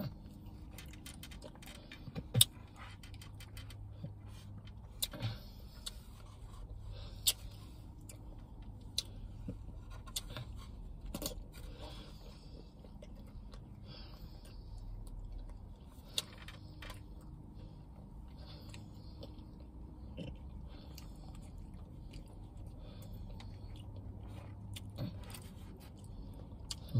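Eating ice cream from a takeout dish with a plastic spoon: the spoon scrapes and clicks against the dish, with the mouth sounds of eating between strokes. The clicks are sharp and scattered, and the loudest comes about two seconds in.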